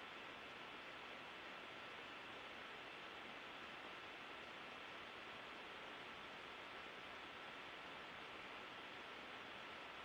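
Faint steady hiss of the space station's in-cabin audio feed, with two faint high steady tones running under it and no distinct sounds.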